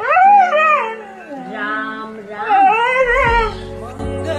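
A husky-type dog howls twice in rising-and-falling, wavering calls that sound like "Ram ram": one at the start and one about two and a half seconds in. Music with steady low notes plays underneath, and a bass line comes in near the end.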